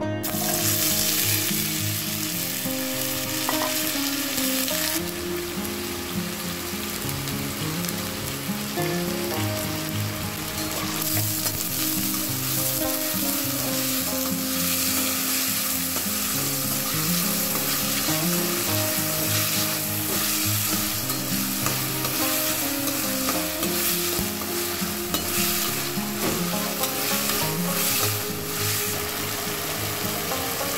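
Diced potatoes hitting hot oil in a pan: a sudden loud sizzle right at the start that settles into steady frying, with a spatula stirring the pieces.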